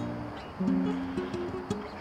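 Background music of a plucked acoustic stringed instrument, a few notes held steadily from about half a second in.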